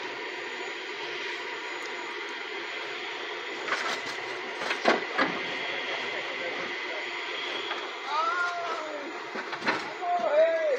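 Steady mechanical din of distant factory machinery: a continuous hiss with faint whining tones. A few sharp knocks come about four to five seconds in, and a short voice sounds near the end.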